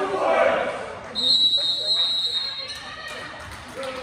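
A referee's whistle blown once, a steady high blast held for about a second and a half, after a moment of voices in the gym.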